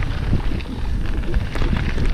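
Wind rushing over the action camera's microphone as a mountain bike rolls along a gravel track, its tyres crunching on the stones with scattered small clicks and rattles.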